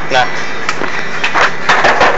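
Handling noise from a hand-held phone camera being moved: a few short knocks and rustles over a steady airy background noise.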